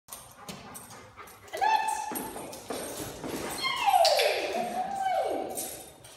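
A chocolate Labrador whining in two drawn-out cries: a short one about one and a half seconds in, then a longer one that slides down in pitch, holds, and drops again near the end. The whining is its vocal alert on snake scent.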